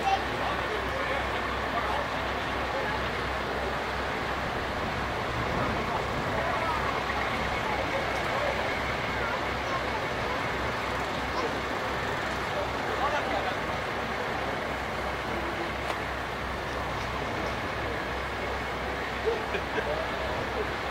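Heavy diesel engine running steadily with a low throb, with indistinct voices over it.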